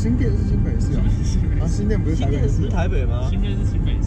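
Steady low rumble of road and engine noise inside a moving car's cabin, with young men's voices talking over it.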